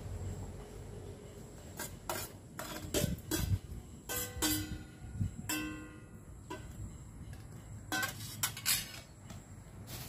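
Stainless steel bowl knocked against a stone pestle and mortar while sliced chilies are emptied out of it: a scatter of knocks and clinks, two of them, about four and five and a half seconds in, leaving a brief metallic ring.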